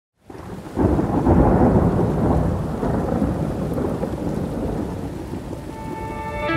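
Thunderstorm sample opening the track: a rolling thunder rumble over steady rain, swelling in about a second in and slowly dying away. A music note comes in near the end.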